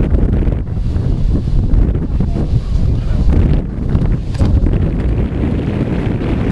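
Wind buffeting the microphone: a loud low rumble that rises and falls in gusts.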